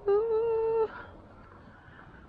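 A person humming one steady, level note for just under a second.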